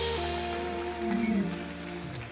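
Soft background music from the church band: long held chords over a low steady bass, with no melody standing out.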